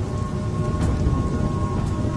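Heavy rain on a car's windscreen and body, heard from inside the cabin, over a steady deep rumble. A faint steady tone sits in the background.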